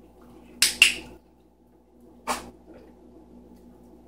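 A dog making short, sharp noisy sounds: two quick ones close together about half a second in, and another about two seconds in.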